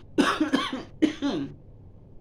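A woman coughing to clear her throat, in two bursts in quick succession.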